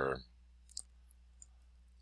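A single short spoken word, then a computer mouse clicking once a little under a second in and faintly again about half a second later, over a faint low hum.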